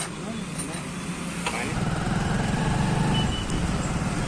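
A motorcycle engine starts about a second and a half in and then runs with a steady low beat.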